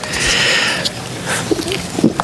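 A man drawing breath in audibly at a close microphone, lasting just under a second.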